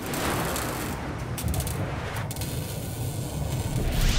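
Logo-animation sound effect: a sudden wash of hissing, static-like noise over a deep rumble. The hiss thins out about two seconds in, then swells again near the end.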